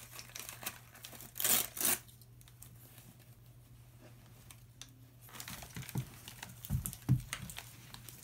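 Crinkly plastic packet being torn and crumpled by a child's hands: bursts of rustling in the first two seconds, a quiet spell, then more rustling with a couple of low bumps near the end.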